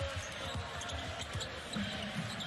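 Basketball being dribbled on a hardwood court: a run of short, low bounces at a steady pace over the steady noise of an arena crowd.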